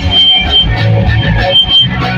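Punk band playing live and loud: electric guitars and drums, with no vocals in this stretch.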